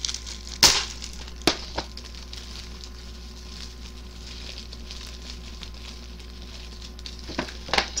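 Plastic shrink-wrap being crinkled and peeled off an instant cup ramen by hand: a soft crackling rustle broken by a few sharp snaps of the film, the loudest just over half a second in and two more near the end.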